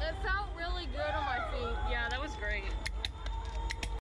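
People's voices, too unclear to make out words, over a steady low rumble, with a few sharp clicks near the end.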